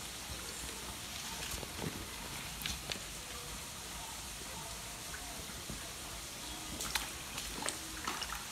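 Quiet steady hiss with a few soft clicks and rustles, as rope netting over a pond is pulled aside.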